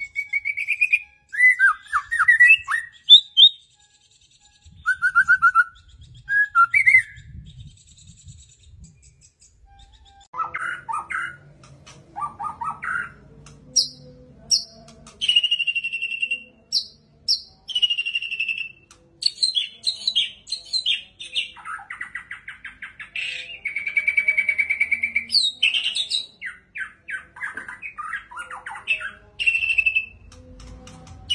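White-rumped shama (murai batu) in full song: a long run of varied clear whistled phrases, fast trills and chattering notes, broken by short pauses between phrases.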